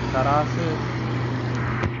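A voice speaking briefly in Tamil narration over a steady low hum and background hiss, with a sharp click near the end.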